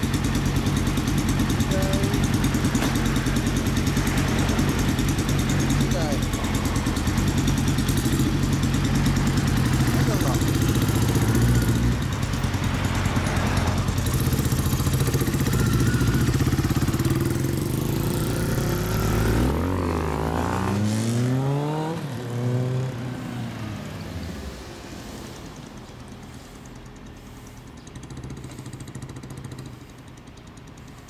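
Motorcycle engines, among them a 2012 Kawasaki Ninja 1000's inline-four through a Nojima aftermarket exhaust, idling steadily. About two-thirds of the way in they rev and pull away, the engine notes rising as they accelerate, then fading into the distance.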